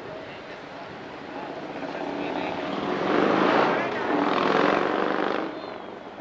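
A motor vehicle passing close by, its engine and tyre noise building over a few seconds, loudest in the middle, then dropping away about five and a half seconds in.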